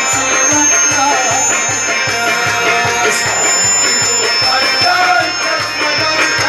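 Live folk music from a small ensemble: harmonium and a string instrument carrying a wavering melody over a steady hand-drum beat of about three strokes a second.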